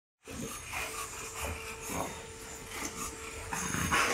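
American Bully dog breathing heavily, a puff of breath about every half second, with a faint steady hum behind it.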